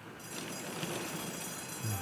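Thoroughbred racing starting gate opening at the break, with the starting bell ringing steadily and hooves clattering as the field leaves the stalls; it begins about a quarter second in.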